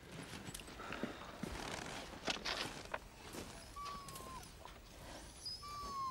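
Crunching and rustling in snow, then a dog whining: a short high whine about four seconds in and a longer one near the end that slides down in pitch.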